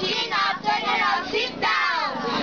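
A group of children singing together.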